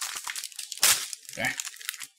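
Plastic snack wrapper crinkling and crackling as it is handled and opened, with one loud crackle a little under a second in.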